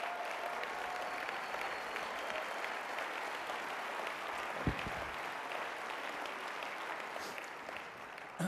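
Large audience applauding steadily, dying down near the end, with one brief low thump about halfway through.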